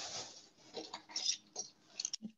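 Faint, short scratchy rustles and light clicks of hands handling seashells over a tray of sand, mostly about a second in.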